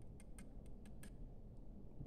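A few faint, light metallic ticks at uneven spacing, stopping a little past halfway, as a bent steel hold-down rod is worked off a freshly soldered nickel tab on the aluminium bus bar.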